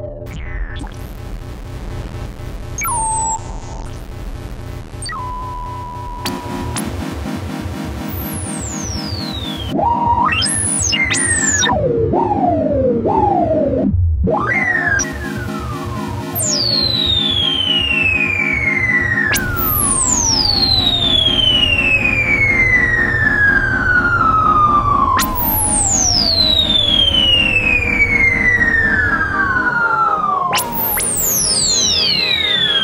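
Fender Chroma Polaris analog synthesizer holding a low note while its resonant filter is swept, first in short rising and falling glides, then from about halfway in through long sweeps that fall slowly from very high to low, three times. The sweeps are played to bring out the filter stepping the Polaris is famous for.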